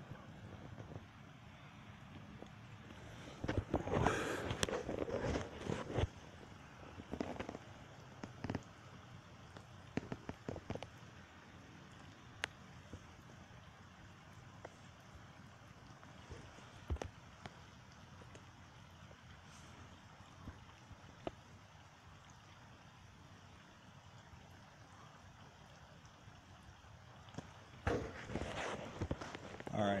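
Steady rain falling, an even hiss, with a run of knocks and rustles about four seconds in, a few scattered clicks after, and more rustling in the last couple of seconds.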